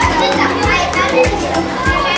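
Children chattering and calling out in a classroom over background music with a steady beat.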